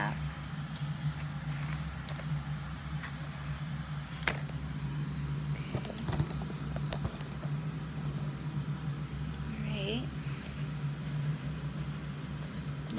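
Hands squishing and stirring oobleck in a plastic bowl, with a few sharp knocks from handling the bowl, over a steady low hum. A brief vocal sound comes near the end.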